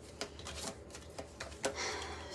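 A deck of tarot cards being shuffled by hand: a few quiet, irregular clicks and flicks as the cards slide and tap against each other.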